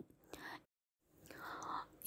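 Very faint breath noise in a pause between spoken sentences, with a moment of dead silence in the middle, then a soft intake of breath before speech resumes.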